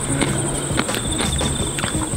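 Insects chirring in a steady high-pitched drone, with scattered short clicks and a low hum beneath.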